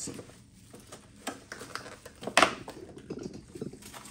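Light rustling and tapping of takeout food packaging being handled on a table, with a louder crinkle about two and a half seconds in.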